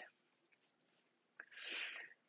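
Near silence, then a man's quick breath in, an airy hiss lasting about half a second near the end, after a faint mouth click.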